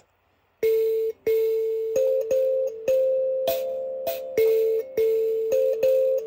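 Mbira dzavadzimu, its metal keys plucked by the thumbs in a repeating rhythmic pattern of root notes on two or three low pitches, each stroke ringing on into the next with a buzz from the bottle-cap buzzers on the soundboard. The playing starts about half a second in.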